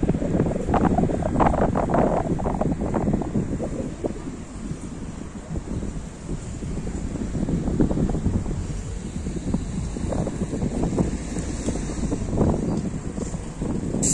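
Wind buffeting the microphone in irregular gusts, strongest about one to three seconds in and again near the end.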